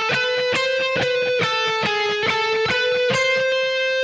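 Kiesel DC700 seven-string electric guitar, tuned a whole step down, played slowly with alternate picking: a run of single picked notes, about five a second, stepping between neighbouring notes high on the neck.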